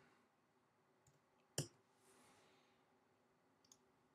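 Near silence broken by a few computer keyboard and mouse clicks: one sharp click about one and a half seconds in, with fainter clicks just before it and near the end.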